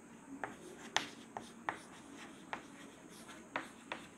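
Chalk writing on a chalkboard: irregularly spaced, sharp taps and short scrapes as letters are chalked on, fairly faint.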